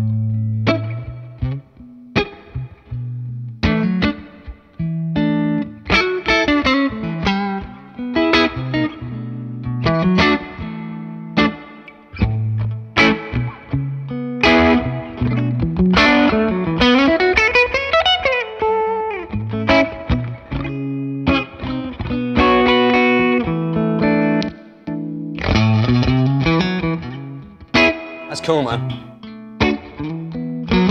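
FGN J Standard Iliad electric guitar (ash-body, Tele-style, with Seymour Duncan STR1 and Vintage 54 pickups) played through an amp: strummed chords and single-note licks in short phrases, with bent notes about two-thirds of the way through.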